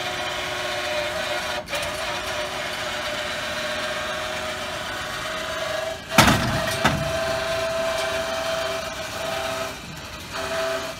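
Electric motor drive of a tilting trailer running with a steady whine as the bed tilts down. There is a loud clunk about six seconds in and a smaller knock just after. The motor stops near the end.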